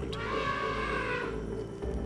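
A single elephant trumpet call lasting about a second, from an agitated young male, over a steady low drone of tense background music.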